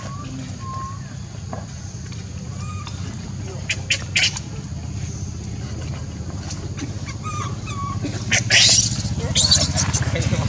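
Baby macaque giving short squeaky calls, then loud high-pitched squealing near the end as an adult macaque grabs it. A steady low hum runs underneath.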